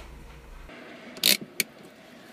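A low steady hum cuts off suddenly about two-thirds of a second in; then, inside a car, a short loud rasp is followed a moment later by a single sharp click, handling noises in the cabin.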